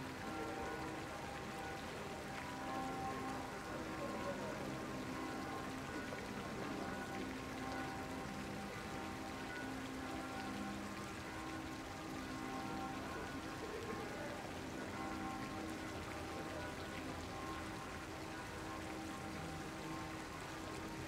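Fountain jets splashing steadily into a pond, a continuous rain-like patter, under soft music of long-held tones.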